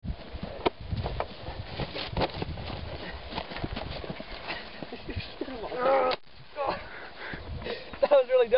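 People scuffling on grass: scattered knocks and thuds over an uneven outdoor rumble, with a short cry about six seconds in and more brief cries near the end.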